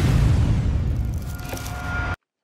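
Logo sting sound effect: a loud, deep rush of noise that fades steadily, with a faint high tone coming in during the second half.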